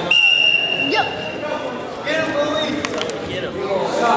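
Referee's whistle: one steady, high blast lasting about two seconds, starting the wrestling bout, over spectators talking and shouting in a gym.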